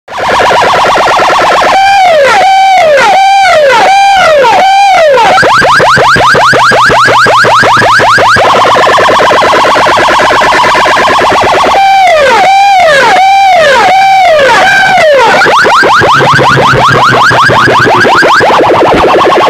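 Electronic siren effect played very loud through a stack of horn loudspeakers. Each cycle is five rising-and-falling wails in about three seconds, then a fast run of rising chirps and a steadier stretch, and the cycle repeats about twelve seconds in.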